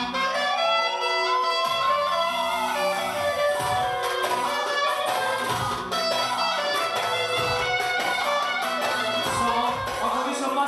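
Live band dance music led by a clarinet, whose melody slides up and back down in pitch over the first few seconds, over a steady beat.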